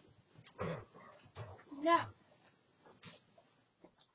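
A person's short spoken remarks, a 'yeah' about two seconds in, with small sounds from a dog right beside the microphone.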